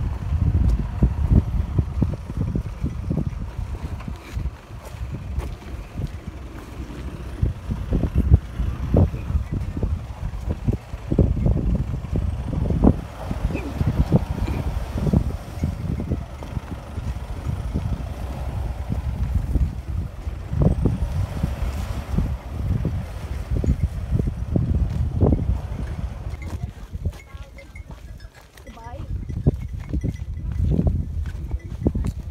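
Wind buffeting the microphone in uneven low gusts, with faint voices in the background.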